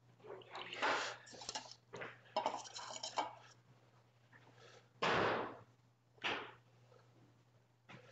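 Light clinks and knocks of small cups and a dropper bottle being handled on a countertop, in irregular bursts, the loudest a knock about five seconds in, over a steady low hum.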